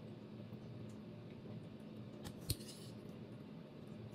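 Metal fork and knife clicking against a ceramic dinner plate while food is picked up, with one sharp clink about two and a half seconds in.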